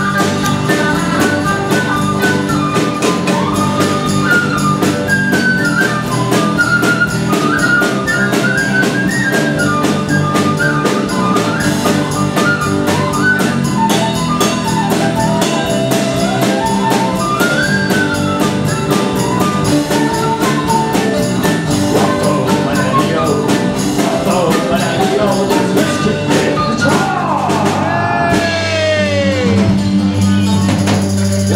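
Live Celtic folk band playing an instrumental tune: a transverse flute carries a fast melody of short notes over drum kit, acoustic guitars and bass. Near the end a run of falling swoops in pitch cuts across the music.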